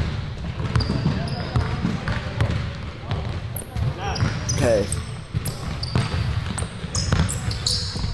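Basketball game sound from an indoor gym: a ball dribbling on the court in repeated thuds, with short high squeaks scattered through the second half and a brief shout about two-thirds of the way in.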